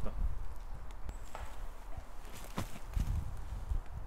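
A few light steps and knocks on the forest floor over a low, steady rumble, as a disc golfer follows through after an approach throw.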